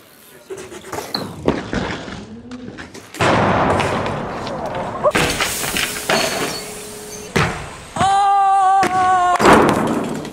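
BMX bikes and riders hitting pavement in a quickly cut run of street-riding crashes, with clattering knocks and scrapes. The sound changes abruptly at each cut. A held, wavering tone lasts a little over a second near the end.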